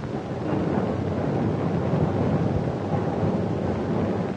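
A loud, rumbling rush of noise that swells up in the first half-second and then holds steady.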